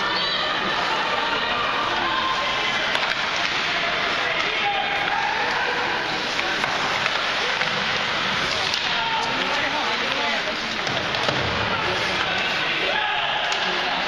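Ice hockey rink sound: a steady wash of indistinct voices from spectators and players, with skate blades scraping the ice and occasional sharp clacks of sticks and puck.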